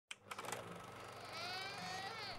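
An infant crying: one drawn-out wail that begins a little past halfway and bends gently in pitch, after a few faint clicks near the start.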